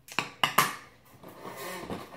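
Handling noises: three sharp clacks in the first half-second, like a plastic compact case being set down, then a short scraping rustle near the end as the cardboard advent calendar box is handled.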